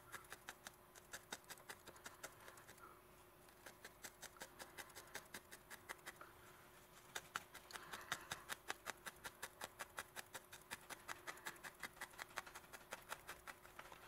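Felting needle jabbing repeatedly into wool roving, a faint click with each stab, several a second. The jabs come a little faster and louder in the second half.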